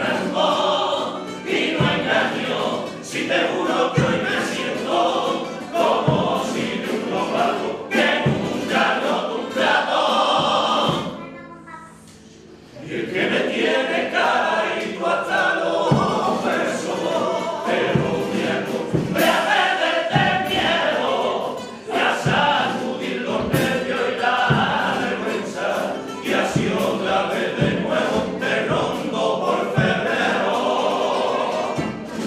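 Male comparsa choir of the Cádiz carnival singing together to Spanish guitar accompaniment, with regular beats under the song. The sound drops away briefly about eleven seconds in, then the choir comes back in at full strength.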